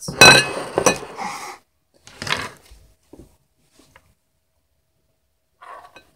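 Clear glass bowls clinking against each other and knocking on a wooden table. A ringing clink comes at the start, a shorter knock about two seconds in, then a few faint taps.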